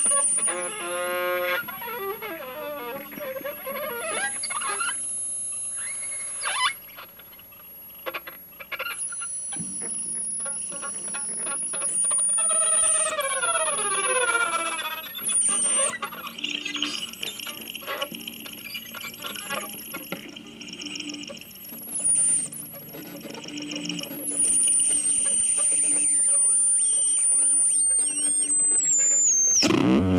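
Improvised, noisy violin playing: bowed notes that slide up and down in pitch, with squeals, over a thin high whine that holds and shifts in pitch every few seconds.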